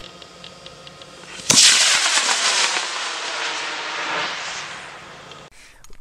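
G40-7 model rocket motor igniting with a sudden crack and rush about a second and a half in, then burning with a steady hissing roar that fades over about four seconds. It is a successful ignition, and a burn that seemed longer than two seconds.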